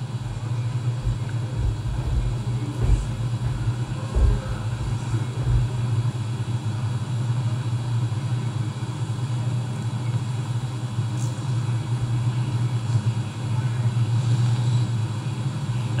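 A steady low rumble with no words over it.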